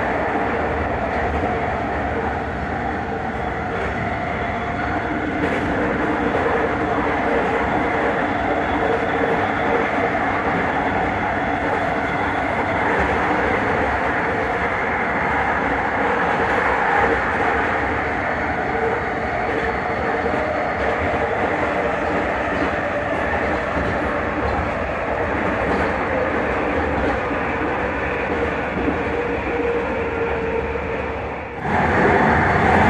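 Vancouver SkyTrain car running at speed on its elevated guideway, heard from inside the car: a steady rumble of wheels on rail with a steady hum from the linear induction motor drive.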